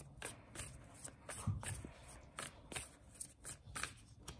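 A large tarot deck, the Light Seer's Tarot, being shuffled by hand, packets of cards passed from hand to hand with short slapping and riffling strokes about three times a second.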